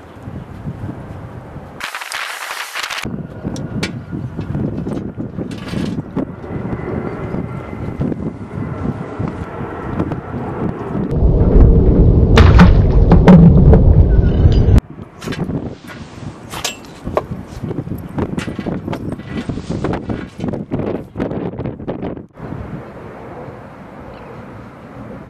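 Wind buffeting the microphone, with scattered clicks and knocks throughout and one loud, low gust from about 11 to 15 seconds in that cuts off suddenly. A short hiss comes about two seconds in.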